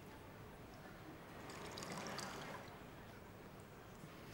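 Wine poured from a bottle into a glass: a faint splashing that swells about a second and a half in and dies away about a second later.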